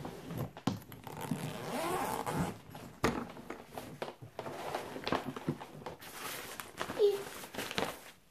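Zipper of a Wittchen hard-shell suitcase being run open, then the lid and fabric lining handled, with a sharp knock about three seconds in.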